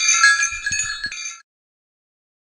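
A shimmering, sparkly chime sound effect: several high bell-like tones ringing together, stopping about a second and a half in.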